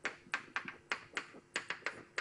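Chalk tapping and clicking against a blackboard while writing: about ten quick, sharp taps at an uneven pace, a few per second.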